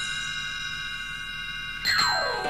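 A sustained electronic chime tone that rings steadily, the page-turn signal of a read-along story cassette. A second chime comes in near the end with a downward-sliding pitch.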